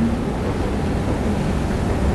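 Steady low rumble with a faint hiss, no words.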